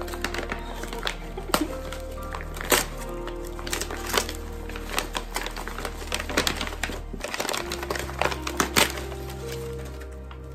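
Background music with held chords, the bass changing about seven seconds in, over irregular crisp crackles and rustles of kraft paper wrapping being pulled open from around a journal.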